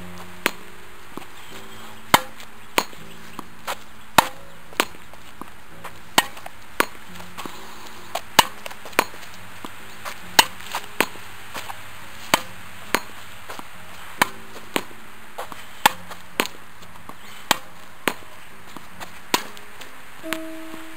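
Tennis ball being struck by a racket and rebounding off a concrete practice wall in a long, steady rally of sharp pops, about one or two a second. Soft background music of sustained notes plays underneath.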